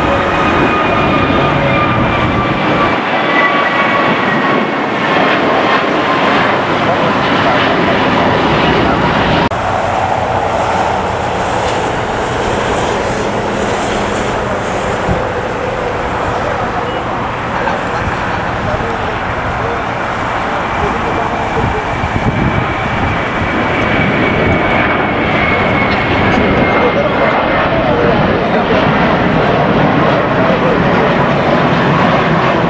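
Airbus A321 jet airliners climbing out after takeoff: a loud, steady engine roar with a whine that slides down in pitch as the jet passes. The sound changes abruptly about a third of the way in to a second jet's roar, whose whine again falls in pitch near the end.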